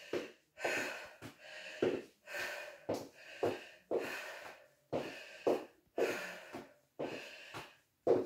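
A woman breathing hard and fast after a high-intensity exercise interval: a steady run of quick, heavy breaths in and out, with a few light taps in between.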